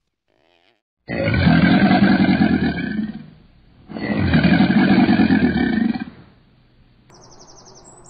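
Alligator bellowing: two loud, low, rough bellows of about two seconds each, the second following a short pause.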